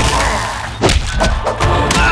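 Background music with several sharp impact thumps as plastic Akedo battle figures strike each other in the toy arena; the strongest hit comes a little under a second in, with two more close together near the end.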